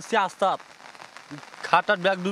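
Steady rain falling under an umbrella, with a man's voice in short bursts at the start and again near the end.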